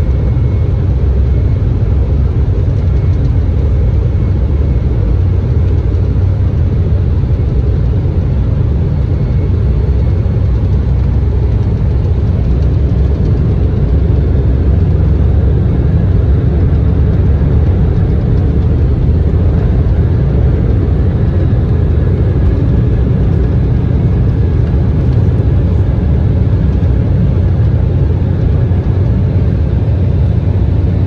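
Jet airliner taking off, heard from inside the cabin: a loud, steady engine roar with a heavy low rumble through the takeoff roll and into the climb-out, with a faint high whine joining about twenty seconds in.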